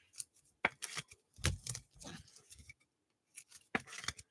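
Trading cards and rigid clear plastic top loaders being handled: cards sliding into and against the plastic holders, making a run of short sharp clicks and scrapes, busiest in the first two seconds.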